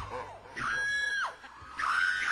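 A shrill, high-pitched voice: short falling cries, then one long scream-like cry of under a second that drops in pitch at its end, with another high cry starting near the end. It is presented as the voice of the Pomba Gira spirit, Maria Padilha.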